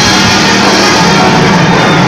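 Live rock band playing loudly, with electric guitar, bass, drums and saxophone, picked up by a low-quality phone microphone in the crowd.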